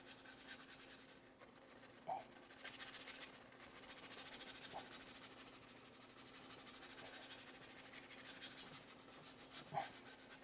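Faint, on-and-off scrubbing of a soft-bristled wheel brush over a wet wheel barrel, agitating sprayed-on wheel cleaner to loosen the iron deposits. A low steady hum runs underneath.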